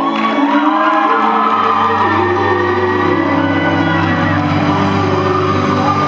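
Live band music with a child singing into a microphone, and a crowd cheering and whooping over it from the start. A steady bass line comes in about a second and a half in.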